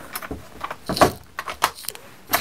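Clicks and light knocks from a Parkside hard plastic tool case being shut and handled on a workbench mat, the loudest about a second in and a quick run of smaller ones near the end.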